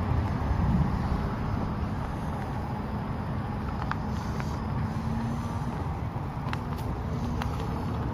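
Steady low rumbling noise of riding slowly along a park path, picked up by a camera mounted on the ride itself. A faint steady hum runs through the middle seconds, and a few light clicks sound.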